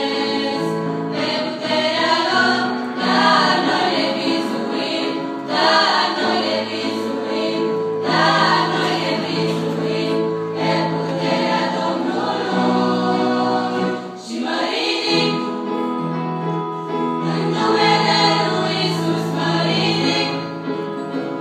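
A girls' choir singing a Christian song in several voices over sustained accompanying chords, the music dipping briefly about two-thirds of the way through.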